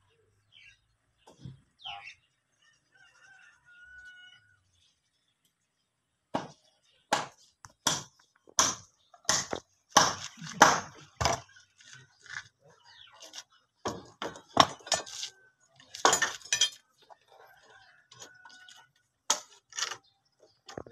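A run of sharp knocks, one to two a second with pauses, starting about six seconds in, from work on bamboo scaffolding poles. Faint bird calls come before it.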